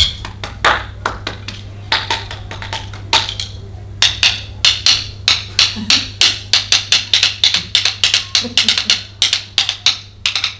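Wooden sticks tapping out a rhythm. The taps are spaced out at first, then from about four seconds in they become a quick, even run of about five taps a second. The rhythm is a worked-out, written one rather than an improvised one.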